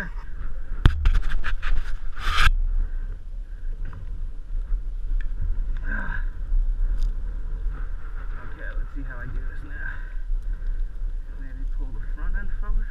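A man laughs, then a quick run of loud clatters and scrapes about a second in as a dirt bike stuck on a steep sandy slope is shifted and scrapes against the ground, over a steady low rumble.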